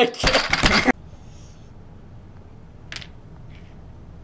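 Small hard game pieces clattering loudly together for about the first second, stopping suddenly; about two seconds later comes a single light click of a checker set down on the board.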